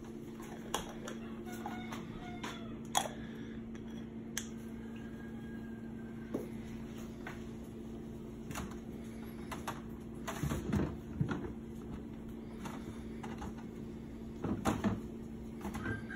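Scattered light clicks and knocks of glass jars and plastic containers being moved about on refrigerator shelves, over a steady low hum.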